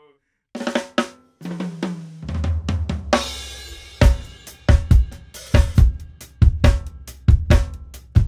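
Drum kit played solo in a groove giving the feel of Brazilian pagode. It starts about half a second in with scattered strokes, a cymbal crash comes about three seconds in, and then heavy low drum strokes fall a little under a second apart under snare and cymbal hits.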